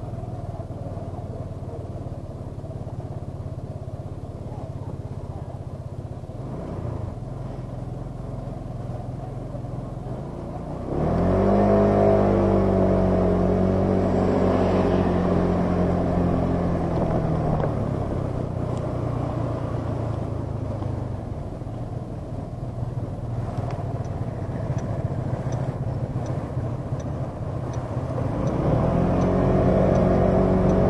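Motor scooter engine idling at a stop, then pulling away about eleven seconds in, its note rising sharply and holding for several seconds before easing off. It picks up again near the end.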